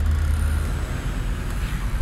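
Steady low outdoor rumble with a faint even hiss above it, without any distinct event.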